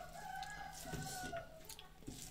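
A rooster crowing once: a single long call of about a second and a half, rising slightly and then falling away.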